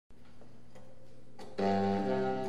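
Faint room noise with a few light ticks, then about one and a half seconds in, a trio of French horn, baritone saxophone and electric guitar comes in on a held chord.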